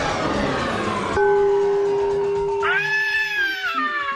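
Cartoon soundtrack: about a second of rough, crunchy noise, then a steady held note. Over the held note, from past the midpoint, a pitched cry rises and then falls in pitch.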